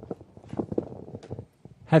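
A quick, irregular string of soft clicks and knocks: handling noise from a stand-mounted microphone being adjusted. A man's voice starts at the very end.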